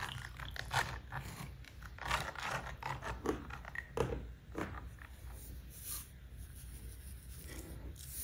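Potassium chloride solution being stirred by hand in a plastic tub, making irregular scraping and rubbing noises with soft clicks against the tub and the electrodes.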